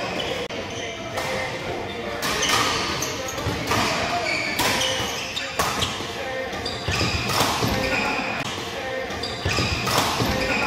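Badminton rally: rackets striking the shuttlecock about once a second, sharp cracks in a reverberant hall, with court shoes squeaking on the floor between shots.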